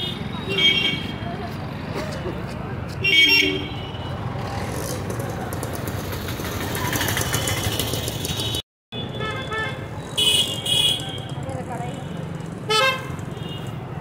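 Busy town-street traffic with motorcycles and auto-rickshaws running past, and several short vehicle-horn toots over the steady rumble. The sound cuts out for a moment about two-thirds of the way through.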